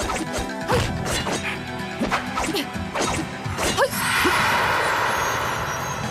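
Martial-arts fight sound effects over background music: a quick run of swishes and hits, then a longer swelling whoosh from about four seconds in.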